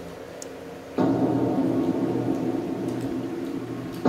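A sustained ringing sound of several steady tones, starting suddenly about a second in and slowly fading.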